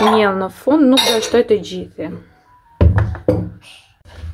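A person's voice repeating the same short syllable in a sing-song way, in two stretches with a pause about two seconds in.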